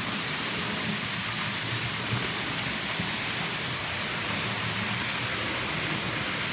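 OO gauge model Class 29 diesel locomotive running along the layout with its coaches: a steady rolling rush of wheels on the track with a low motor hum underneath.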